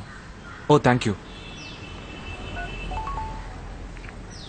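A few faint, short mobile-phone keypad beeps as a number is dialled, heard between two and three seconds in, over a low steady background rumble.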